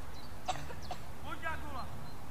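Children's voices calling out across a football pitch in a couple of short, high shouts, with a single sharp knock about half a second in.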